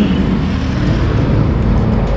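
A motorcycle being ridden at a steady speed: an even engine drone with road and wind noise, heard from the rider's seat.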